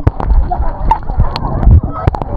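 Sea water sloshing and splashing around a camera held at the surface as it dips in and out of the water, with many sharp clicks and short wavering squeaks.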